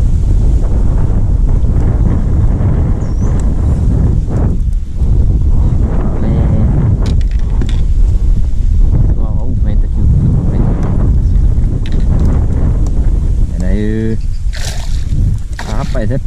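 Heavy wind rumble buffeting the microphone over water splashing and sloshing around a kayak as a hooked peacock bass is brought alongside.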